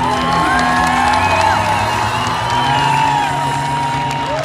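Live band holding sustained notes at the close of a song, with audience members whooping and cheering over the music.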